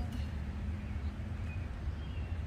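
Steady low background rumble with no distinct events standing out.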